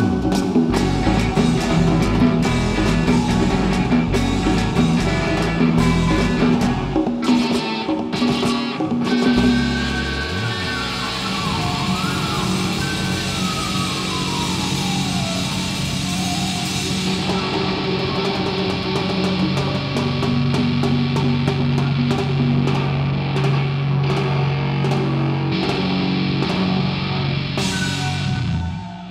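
Live rock band playing: drums, bass, electric guitar and keyboards. The drums are heavy for the first ten seconds, then ease off under sustained chords, with a slow falling glide in pitch around the middle.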